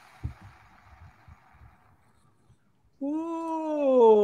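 A faint hiss for the first two seconds, then about three seconds in a single long drawn-out voice sound, a human or animal call that rises slightly and then slides down in pitch before stopping abruptly.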